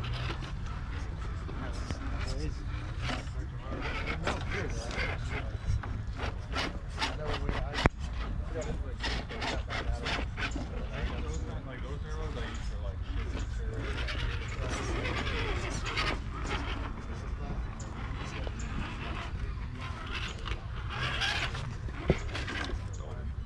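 Indistinct voices of people talking in the background over a steady low rumble of wind on the microphone. Scattered light clicks and knocks run through it, with one sharp click about eight seconds in.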